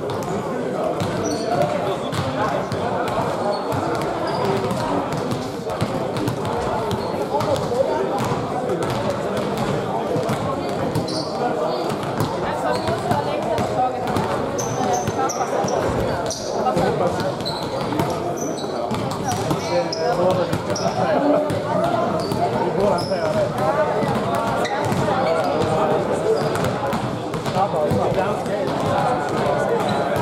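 Echoing sports-hall hubbub of many voices talking at once, with a basketball bouncing on the court floor now and then and occasional short high sneaker squeaks.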